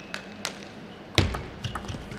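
Table tennis ball ticking off the table and rackets as a point gets under way, a string of sharp clicks a fraction of a second apart. One louder knock with a low thud comes about a second in.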